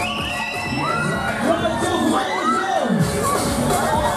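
Riders on a swinging-arm fairground thrill ride screaming as the arm swings them up and down: several high screams that rise and fall and overlap, over the ride's music.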